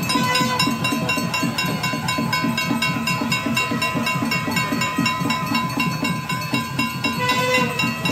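Temple ritual music: a drum beaten in a fast, even rhythm of about five beats a second, with steady high ringing tones held over it throughout.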